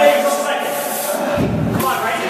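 A man's strained vocal sounds from lifting effort: a held groan trails off at the start, then a heavy breath about one and a half seconds in, and another rising strained sound begins near the end.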